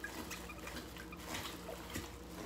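Faint trickling of water with a few small drips as a water-filled plastic bag is twisted shut.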